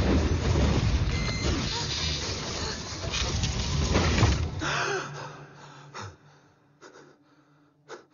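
Film sound effect of burning flames: a loud, dense rumble for about four and a half seconds that then falls away to quiet, broken by a few soft clicks.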